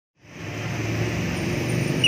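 Steady background noise with a low hum, of the kind typical of road traffic, fading in from silence over the first half-second.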